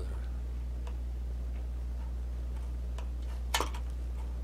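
A utility knife trimming waxed flax thread flush against stitched leather: a few faint ticks, then a sharper click near the end. A steady low hum runs underneath.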